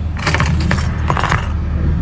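A bunch of keys jangling as a hand picks them up and moves them on a counter, in two short bursts within the first second and a half, over a steady low rumble.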